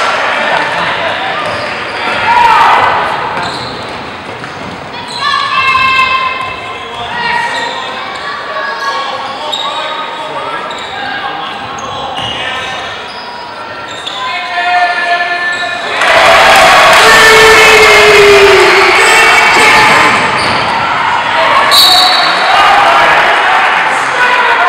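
Basketball being dribbled on a gym's hardwood court, with players and spectators calling out, echoing in the large hall. About two-thirds of the way through, the crowd noise and shouting swell loudly for several seconds.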